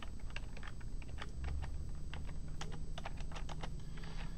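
Typing on a computer keyboard: a run of quick, irregularly spaced keystroke clicks.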